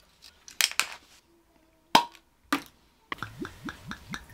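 Twist cap of a glass brandy bottle clicking open, with a sharp ringing clink about two seconds in. From about three seconds in, brandy glugs out of the narrow bottle neck into a small shot glass in a quick, even rhythm of about six glugs a second.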